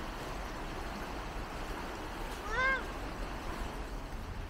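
Steady rush of a shallow river running over stones, with one short rising-and-falling call about two and a half seconds in.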